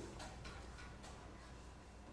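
Quiet classroom room tone: a low steady hum with a few faint ticks.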